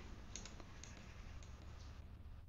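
A handful of faint, irregular computer-mouse clicks over a low background hiss and hum, as arrows are drawn on an online chess board.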